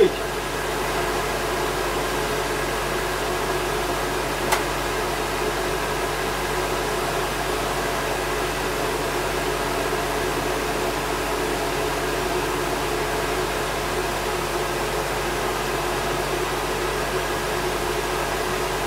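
Wall-mounted electric hand dryer blowing hot air steadily, with a bird skin held in its airflow to dry the feathers. A single short click about four and a half seconds in.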